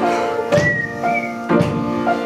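Piano playing sustained chords, struck about every half second to a second. A short two-note whistle sounds over it about half a second in.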